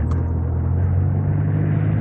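Car engine and road noise heard from inside a moving car's cabin: a steady low drone.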